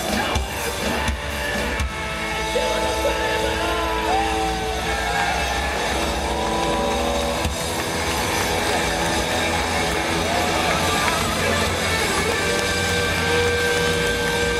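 Hard rock band playing live through an arena PA, heard from the crowd: drum hits in the first couple of seconds, then long held electric guitar notes with some bends ringing out.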